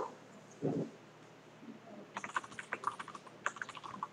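Typing on a computer keyboard: a quick, uneven run of key clicks starting about halfway through. It is preceded a little under a second in by one short, dull thump.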